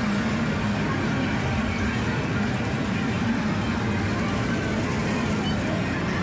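Steady din of a busy indoor amusement arcade: game machines running and people talking in the background.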